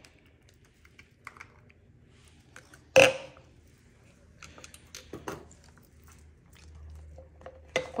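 Plastic baby bottles and caps tapping and clicking on a stone countertop as they are handled, with one louder knock about three seconds in.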